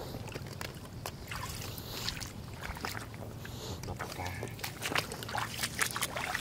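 Eggs being lifted out of a shallow puddle by hand: small splashes of water and a run of light clicks and knocks, over a low steady rumble.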